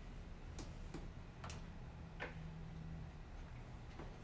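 Four light taps of a paintbrush working paint onto a stretched canvas, spread over the first two and a half seconds, over a low steady hum.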